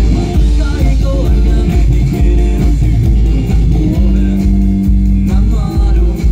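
Live band playing through a stage PA: electric bass, drum kit and electric guitar, with a heavy low bass and kick-drum pulse.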